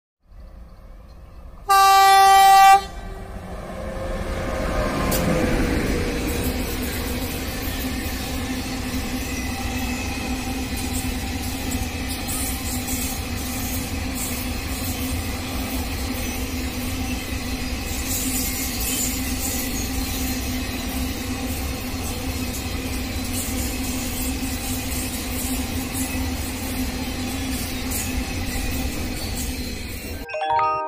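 A freight train's horn sounds one loud blast of about a second. Then a long train of flatcars loaded with steel rails rolls past close by, with a steady rumble of wheels on rails.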